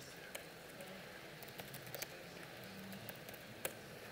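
Faint, scattered clicks of laptop keys as terminal commands are typed, with one louder keystroke about three and a half seconds in.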